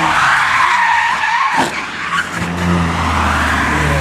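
Nissan 350Z Roadster's tyres skidding as the car slides out of control, ending in a sharp knock about a second and a half in as it hits the guardrail. Then another car's engine running steadily as it approaches, a Volkswagen Scirocco.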